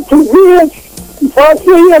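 A high-pitched voice sounding a few short syllables that rise and fall in pitch, four separate bursts in two seconds, as in a sung or chanted phrase.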